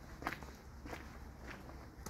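Faint footsteps of a person walking at an easy pace, three soft steps about two-thirds of a second apart.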